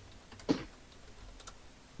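A few computer keyboard keystrokes, heard as scattered short clicks about a second and a half in. A single sharper, louder knock comes about half a second in.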